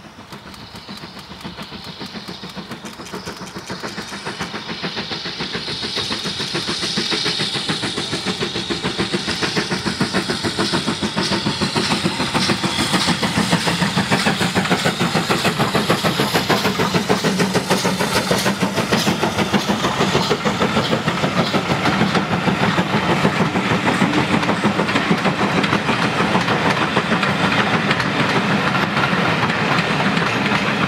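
BR Standard Class 4 4-6-0 steam locomotive 75014 working hard uphill with a passenger train: a fast, even beat of exhaust chuffs that grows louder over the first several seconds as it approaches. It then holds loud as the train passes, with the rumble of the coaches' wheels on the rails.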